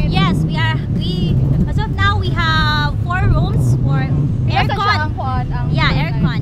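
Women talking in conversation, with a steady low rumble underneath.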